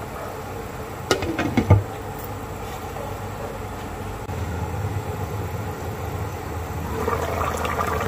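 A glass pan lid knocking onto a wok about a second in, twice, then a spicy fish stew bubbling at a steady boil under the lid, a little louder about halfway through.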